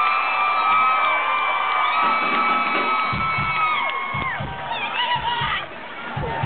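Concert crowd cheering and whooping, with long high shouts held and sliding. From about three seconds in, low drum hits from the kits come in under the cheering.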